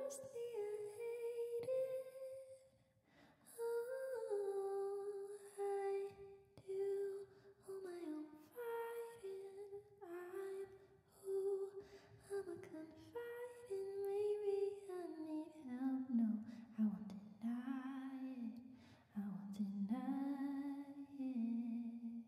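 A woman singing softly and unaccompanied into a handheld microphone: a slow, wordless melody of long held notes that drops lower in pitch over the last several seconds.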